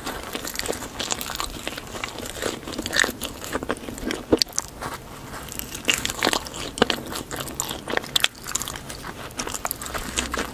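Close-up eating sounds of biting into and chewing a white-iced doughnut topped with sprinkles, with many small irregular crunchy clicks.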